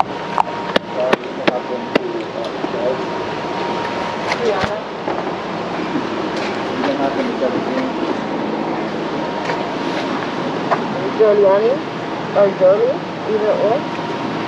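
Steady background noise of an indoor go-kart hall with indistinct voices. A few sharp knocks in the first two seconds come from handling of the chest-worn camera, and voices and a laugh come through more clearly near the end.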